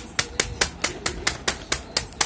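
A packet of Uncle Chipps chips being struck by hand to crush the chips inside: short, evenly spaced hits, about four or five a second.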